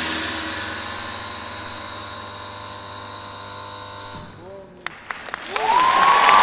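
The final sustained chord of an orchestra and rock band fades away and stops about four seconds in. A few single claps and shouts follow from the audience, then a loud whistle rises and holds near the end as applause and cheering build.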